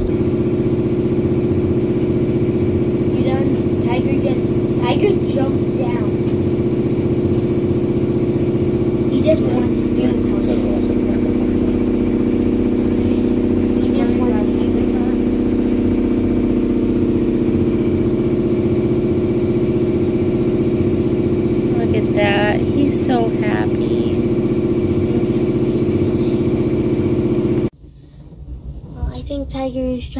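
A boat's engine running steadily, a constant loud drone, with a few faint voices over it. The drone cuts off abruptly near the end.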